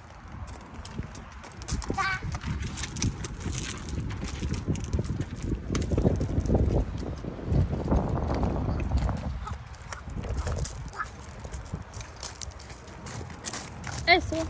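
Footsteps crunching on loose gravel, an irregular run of short crunches as people walk across a gravel lot.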